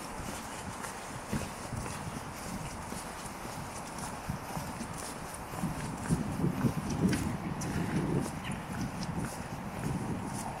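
Footsteps on a block-paved towpath, with a louder low rumble from about six seconds in.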